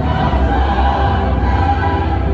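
Church choir singing in parts, holding long notes, with keyboard and violin accompaniment.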